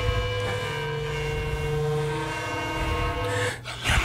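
Horror-film score of held, droning tones over a low rumble, steady and tense. Near the end a sudden loud rush of noise cuts in.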